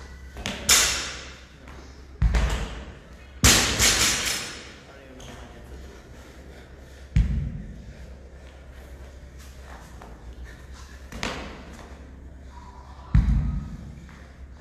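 A loaded barbell and kettlebells being set down on a rubber gym floor during burpee-deadlift reps: about six heavy thuds and clanks spread across the stretch. The loudest come in the first four seconds.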